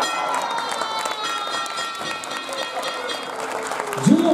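Wrestling ring bell struck rapidly many times, each strike ringing on into the next: the signal that the match is over after the pinfall.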